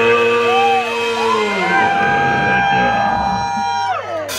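Voices in a club crowd holding long notes and whooping, several at once, some sliding up and down in pitch. The held notes drop away together near the end.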